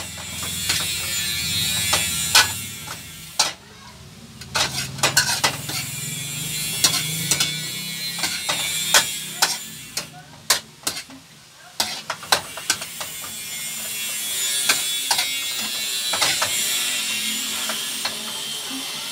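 Metal utensil scraping and clanking against a stainless steel wok during stir-frying, in sharp, irregular knocks, over the steady hiss of food sizzling in the pan.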